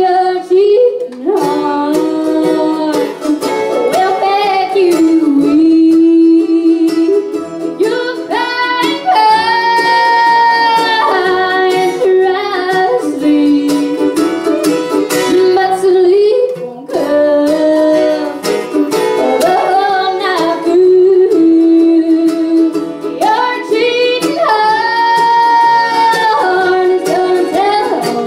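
Live bluegrass band playing a song: a woman sings the melody, with long held notes twice, over mandolin, acoustic guitar, fiddle and upright bass.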